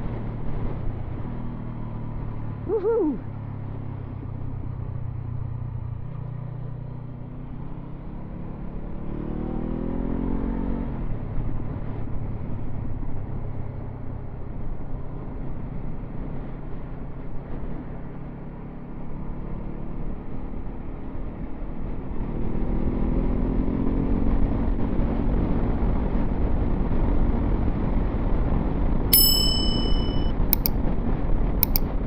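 Motorcycle engine running on the move under wind and road noise, its revs rising as it accelerates twice, about ten seconds in and again past twenty seconds. There is a brief wavering tone about three seconds in, and short high chime tones near the end.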